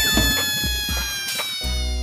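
A long, drawn-out cartoon cat-meow sound effect that slowly falls in pitch, dubbed over the action. Background music with a bass line comes back in near the end.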